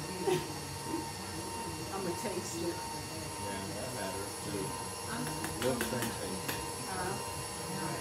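Indistinct background speech, too unclear to make out words, over a faint steady hum. A few short, sharp clicks come a little past the middle.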